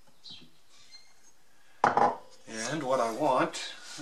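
Quiet, then a single sharp metallic clack about two seconds in as a metal woodworking tool, the steel rule or brass wheel marking gauge, is handled against a hardwood board. A man's voice follows briefly.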